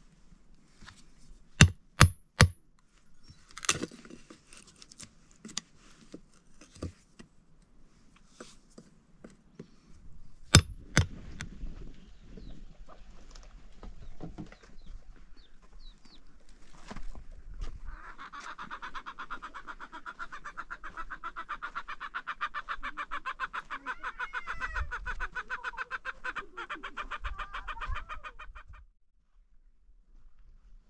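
Three sharp knocks of a hammer striking a wood chisel cutting into a board, about two seconds in, with a few more knocks later. From about the middle, a fast, steady pulsing chatter runs for around ten seconds and then cuts off abruptly.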